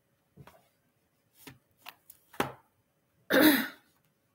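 A few faint small sounds, then a single loud cough about three seconds in, lasting about half a second.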